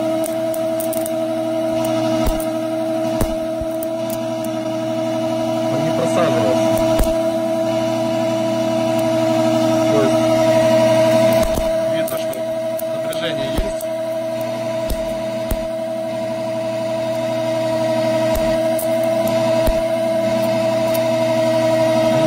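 Old Soviet DC electric motor running with a steady, high-pitched hum, one strong tone over a few lower ones. A few sharp clicks come through it as a wire lead is touched against its terminals.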